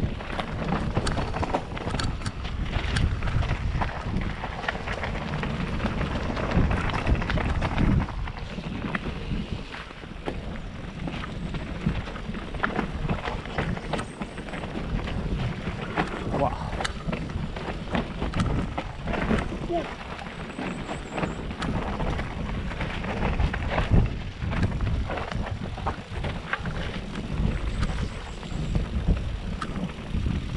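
Mountain bike descending a dirt forest trail, heard from a helmet camera: wind rushing over the microphone and tyres rolling over dirt and roots, with frequent short rattles and knocks from the bike.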